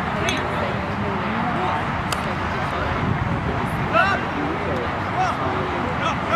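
Indistinct voices of players and onlookers calling and chattering across a playing field, over steady background noise, with a couple of short clicks.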